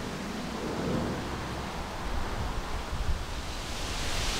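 Wind on the microphone: an uneven low rumble with rustling, and no distinct events.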